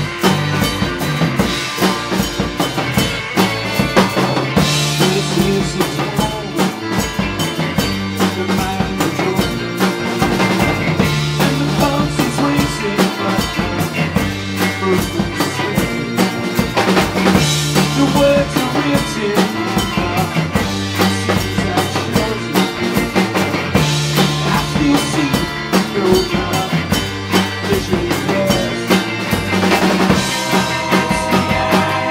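Live garage-rock band playing: electric guitar over a steadily beating drum kit, with snare and bass drum.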